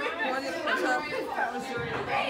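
Background chatter: several people talking at once in a room, a little quieter than the nearby foreground talk.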